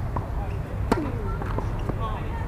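Tennis ball struck with a racket during a doubles rally: one sharp, loud hit about a second in, with fainter ball knocks before and after it.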